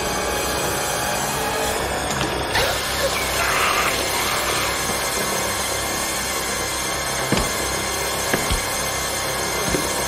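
Film soundtrack: a steady, dense music or ambience bed with no dialogue, with a few short sharp knocks in the second half.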